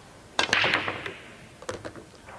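Nine-ball break shot on a pool table: about half a second in the cue strikes the cue ball, which cracks into the rack, and the balls scatter with a burst of clicks that dies away within a second. A few single ball-on-ball clicks follow near the end. The commentators judge it a weak break, not very solid.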